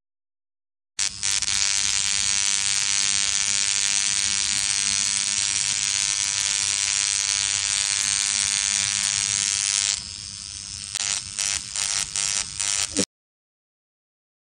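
High-frequency anti-acne skincare device with a clear glass electrode, buzzing steadily. About ten seconds in it drops lower and comes in short stuttering bursts, then cuts off suddenly.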